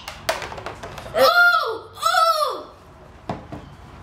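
Two short, high-pitched vocal cries, each rising then falling, about a second apart, from someone reacting to the taste of a jelly bean just put in their mouth. A light knock comes near the start.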